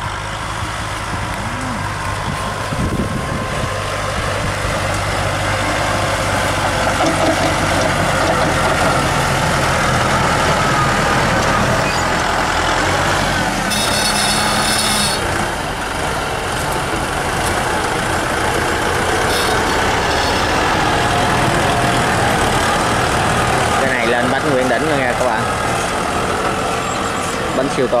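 Kubota M6040 tractor's four-cylinder diesel engine running steadily under load while pulling a disc plough through dry soil.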